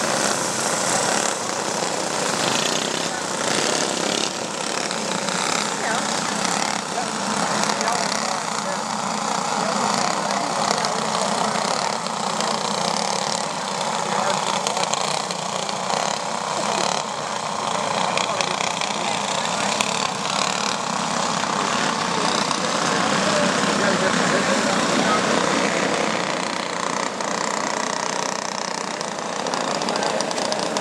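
A pack of flathead four-stroke racing kart engines running hard as the karts race around a dirt oval. The sound is continuous, swelling somewhat about three quarters of the way through.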